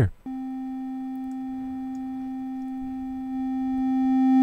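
Digital sine-wave test tone near middle C from Ableton Live, starting about a quarter second in and holding steady with a row of buzzy overtones. In the last second it gets louder as the level is pushed up, and the wave clips toward a square wave.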